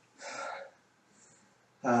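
One heavy, breathy gasp from a winded man resting between all-out elliptical intervals; it lasts about half a second. Speech begins near the end.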